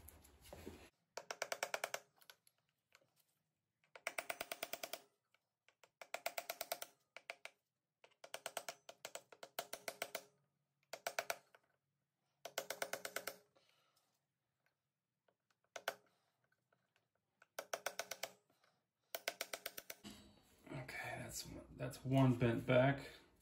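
Steel chisel worked against the tab of a clutch-nut lock washer to bend it back: about ten short bursts of rapid metallic tapping, roughly a dozen taps a second, each burst lasting up to a second with pauses between.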